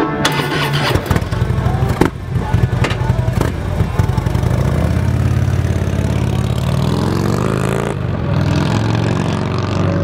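Harley-Davidson Street Glide's V-twin, fitted with aftermarket Vance & Hines pipes, starting up and revving, then pulling away as the bike is ridden off.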